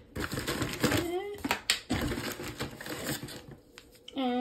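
Hard plastic coffee pods clicking and rattling against each other and the cardboard box as a hand rummages through them, a quick run of light clicks that thins out near the end.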